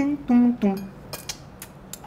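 A few light clinks of cutlery and dishes, about four short clicks in the second half, as food is set out on plates.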